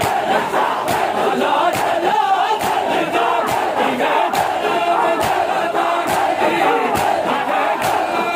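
A large crowd of men beating their chests in unison (matam), a sharp slap a little more often than once a second, over massed chanting voices.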